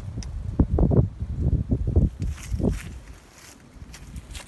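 Wind buffeting the microphone in uneven low rumbles, with a few soft thumps. It dies down near the end.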